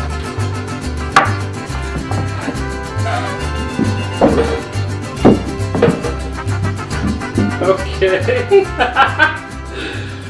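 Background music with a steady, repeating bass line.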